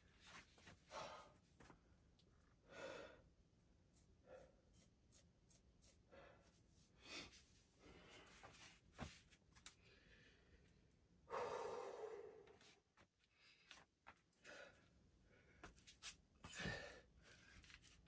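A man's breathing as he recovers between push-up sets: faint, irregular breaths every second or two, with one longer, louder exhale about eleven seconds in.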